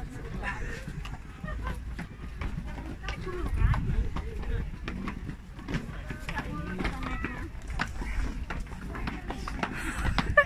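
Background chatter of several people's voices, over a steady low rumble.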